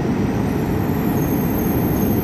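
Electric suburban local train moving past along the platform as it comes into the station: a loud, steady rumble of wheels and cars, with a thin high whine coming in partway through.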